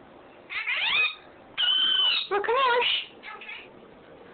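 A pet parrot calling several times: a call that slides down in pitch about half a second in, then a short held high whistle running straight into a wavering call, and a fainter call near the end.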